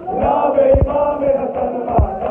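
Men's voices chanting a Shia mourning chant in unison, with a deep thump a little under a second in.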